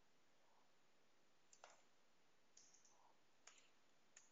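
Near silence broken by a few faint computer keyboard keystrokes: about three short clicks, roughly a second apart, in the second half.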